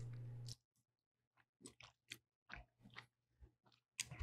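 Faint chewing close to a microphone: a few soft mouth clicks and small crunches from a bite of an open-faced croissant sandwich with crisped pork belly and tomato. A low hum runs for about the first half second and then cuts off.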